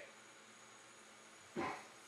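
Quiet room tone, broken by one short sound about one and a half seconds in.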